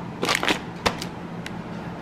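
Plastic food packaging crinkling and crackling as packs are handled on a countertop, in a few short bursts within the first second and a half.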